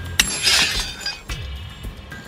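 A hammer striking the steel wedges set in a row of drilled holes in a granite block. There is one sharp strike about a fifth of a second in, then a short rough crackle. Background music plays underneath.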